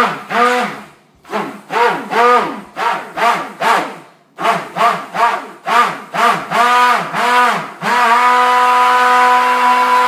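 Hand-held stick blender pulsed in quick bursts in a bowl of cold process soap batter (lye solution mixed into oils), its motor whining up and falling away with each burst about twice a second. Near the end it is held on steadily for about two seconds and then cuts off, blending the batter only briefly to keep it fluid at a light trace.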